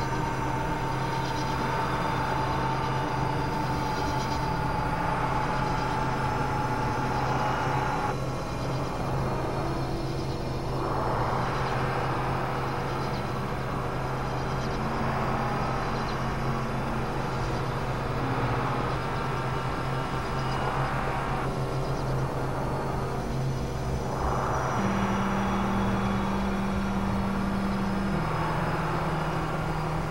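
Synthesizer drone: low sustained notes under a noisy, grinding wash. The wash thins out and swells back twice, and the held low notes step to new pitches near the end.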